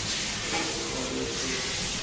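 Steady background hiss with no distinct knocks or clicks.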